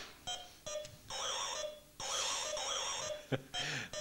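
Electronic buzz-wire game sounding its high, warbling alarm in stop-start stretches, each time the handheld wand touches the wire. There are two short blips, a longer sound about a second in, a long stretch from two seconds to past three, and a last short blip.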